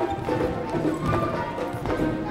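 Symphonic wind band playing, with sustained brass and woodwind notes and scattered sharp, dry percussion clicks.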